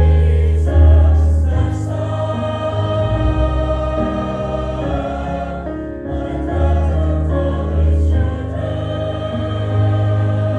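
Mixed choir of young men and women singing together in parts, with held notes over a sustained low bass line.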